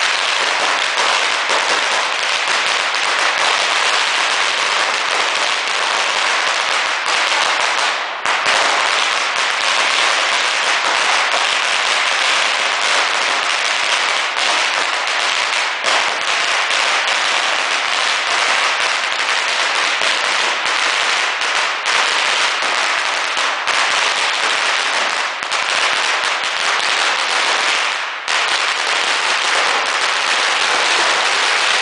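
A long string of red Chinese firecrackers going off nonstop, the bangs so rapid they blur into one loud, dense crackling rattle, with brief lulls about eight seconds in and near the end.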